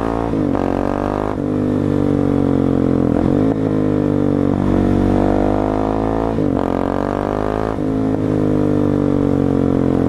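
2017 Husqvarna 701 Supermoto's single-cylinder engine ridden hard through the gears, its pitch climbing and dropping with a gear change every second or two. This is hard break-in riding, using repeated acceleration and engine braking to seat the new piston rings.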